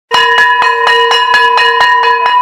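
A bell struck rapidly and repeatedly, about four to five strikes a second, over one steady ringing tone.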